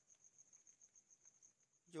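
Near silence, with a faint, high-pitched trill pulsing steadily several times a second, of the kind a cricket makes.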